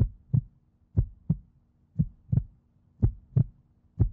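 Heartbeat sound effect: a steady lub-dub, a low double thump repeating about once a second, over a faint low hum.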